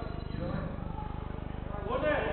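A steady low buzz with an even, rapid pulse, and faint voices behind it.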